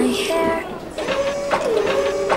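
A woman's lead vocal sung on its own with the backing music removed, the notes gliding between pitches, along with a short noisy sound at the start and a few clicks.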